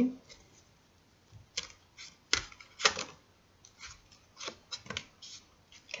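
Tarot cards being dealt off the deck and laid down on a cloth-covered table: a scattered series of short, crisp card snaps and taps, about a dozen in a few seconds.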